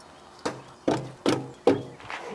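Four dull knocks about half a second apart, each with a short ringing tail.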